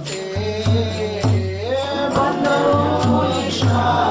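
Devotional kirtan: a chanted Hindu hymn sung with long, sliding notes over a steady drum beat of about two strokes a second.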